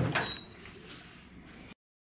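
Metal tool chest drawer sliding on its runners and shutting with a knock at the very start, followed by fainter rattling of tools and parts being handled, with a couple of brief squeaks. The sound cuts off abruptly near the end.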